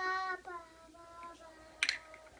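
A young child singing a few held notes, loud at first and then softer. A short sharp click sounds near the end.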